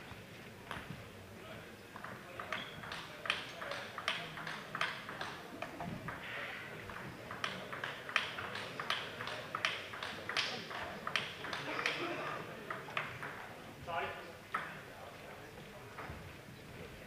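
A table tennis ball clicking off bats and the table in a rally, about two sharp clicks a second for some ten seconds, with spectators talking in a large hall. A short shout is heard near the end.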